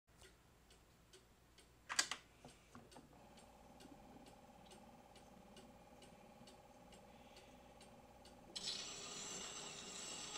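Victor Credenza spring-wound phonograph with a 78 rpm record turning: faint, even ticking about twice a second, a louder click about two seconds in, then a steady hum from about three seconds. Near the end the needle meets the record and surface hiss begins, just before the music starts.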